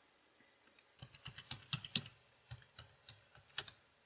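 Keystrokes on a computer keyboard: about a dozen quick, irregular key clicks of a password being typed at a sudo prompt, with a louder final stroke near the end.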